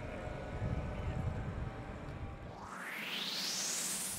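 Low outdoor rumble, then a whoosh transition effect that rises steadily in pitch over the last second and a half.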